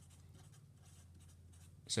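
Felt-tip marker pen writing a word on paper: faint scratching strokes of the tip across the sheet.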